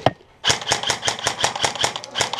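Paintball marker firing a rapid string of shots, about eight a second, after a single sharp crack at the very start.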